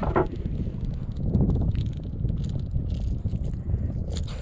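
Wind buffeting the microphone, a steady low rumble, with faint scattered clicks from hands handling a fish and lure.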